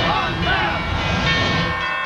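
A broadcast graphics transition sound effect: a sustained, horn-like chord of many steady tones over a low rumble. It cuts off near the end.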